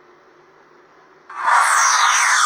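A pop-up phone advertisement's soundtrack cuts in loudly about two-thirds of the way through, after quiet room tone: a loud hissing whoosh with a falling sweep through it.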